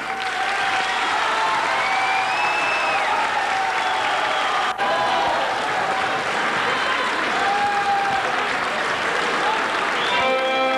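Audience applauding a folk dance performance, with scattered voices over the clapping and a brief click about halfway through.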